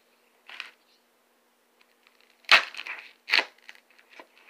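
A knife cutting into a block of dense foam on a wooden bench: a short, faint scrape, then two sharp, loud chopping knocks under a second apart.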